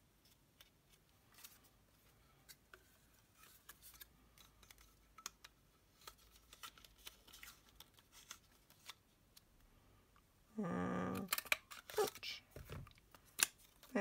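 Quiet handling of card stock and a plastic craft punch: soft rustles and small clicks. About ten seconds in comes a brief, louder hum-like tone, then a quick run of sharper clicks and a knock as the punch is handled.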